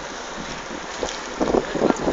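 Wind blowing across a phone's microphone: a steady rush with a few stronger gusts in the last half second.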